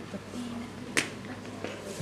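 A single sharp click about a second in, over faint room tone in a pause of the amplified talk.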